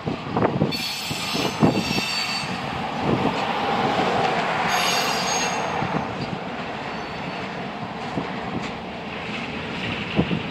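Freight cars of a manifest train rolling past, with clanks in the first couple of seconds and two spells of high metallic wheel squeal, about a second in and again around five seconds in.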